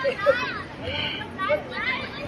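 High-pitched children's voices calling and chattering in short bursts, over a steady background of outdoor crowd noise.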